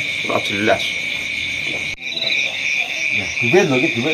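Night-time chorus of crickets and other insects, a steady high-pitched trilling. About halfway through it changes to a faster pulsing trill.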